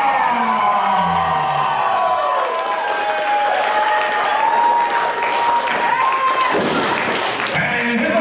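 Wrestling entrance music with sliding, wavering tones, over a crowd cheering and applauding.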